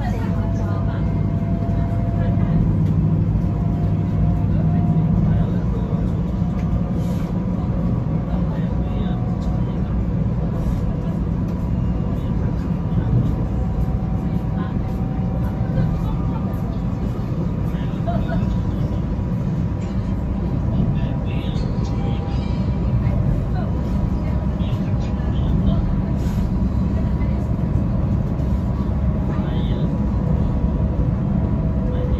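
Cabin noise inside a high-speed train running at speed: a steady low rumble from the running gear and passing air, with a faint steady high hum over it.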